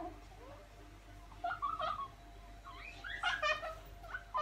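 A young child's high-pitched voice calling out in the background in two short bursts, about a second and a half in and again near three seconds in.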